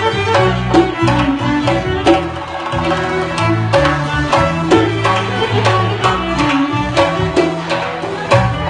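Central Asian folk dance music played live: a bowed fiddle, held upright, carries the melody over regular doira frame-drum strokes and a low sustained bass line.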